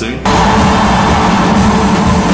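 Loud live band music with drums, cutting in suddenly about a quarter of a second in.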